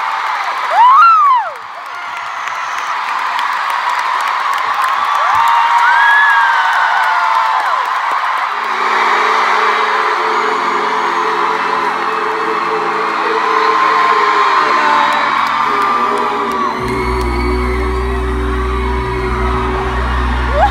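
An arena crowd cheering and screaming, with loud whoops in the first seconds. About halfway through, steady held chords start from the stage sound system, and deep bass comes in near the end as a song begins.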